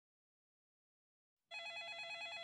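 Silence, then about one and a half seconds in an electronic telephone ringer starts trilling, a rapid warble between two pitches.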